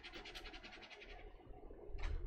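Faint scratching of a water brush's nylon tip scrubbed quickly back and forth on watercolour paper, laying down a paint swatch, in a rapid run of small strokes that fades out after about a second and a half.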